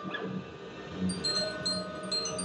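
Experimental live electronic-acoustic music: short, high, bell-like pings scattered over sustained steady tones, with a brief falling sweep near the start and a recurring low pulse.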